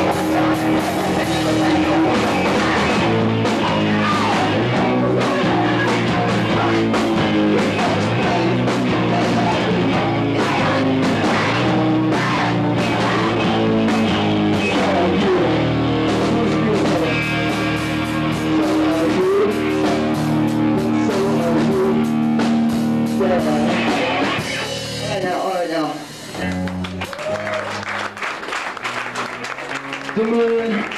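Live rock band playing loudly: drum kit, electric guitar and bass. About 25 seconds in, the bass and drums drop away and the sound thins to a quieter, sparser part.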